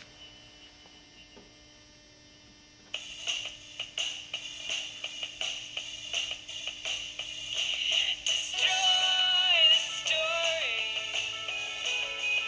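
An audio file playing through the small speaker of an Arduino Wave Shield. After a faint steady hum, music with a regular beat starts about three seconds in, and a gliding melody line joins about two-thirds of the way through.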